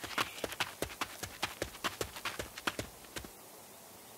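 Hurried footsteps of several people on a hard floor: a quick, uneven run of clicking steps that stops about three seconds in.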